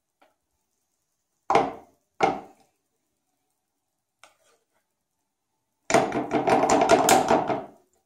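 Spoon and whisk knocking against a glass mixing bowl as thick cake batter is tipped into a metal cake tin: two sharp knocks about a second and a half in, then a quick run of rapid clattering scrapes near the end.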